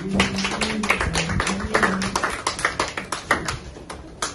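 A small group of people clapping by hand, the claps thinning out toward the end, over low held keyboard notes.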